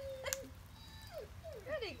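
High-pitched coaxing calls to a dog: one held 'ooo' note that stops about half a second in, with a sharp click near its end, then a few short falling 'woo' calls near the end.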